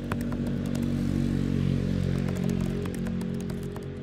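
Computer keyboard typing: scattered key clicks over a steady low hum that swells slightly in the middle and eases near the end.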